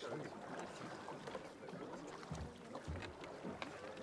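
Faint ambience of a dragon boat on the water, with distant voices murmuring and two low thumps a little past the middle.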